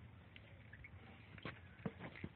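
Near silence with a few faint, short clicks or taps, the last and clearest near the end.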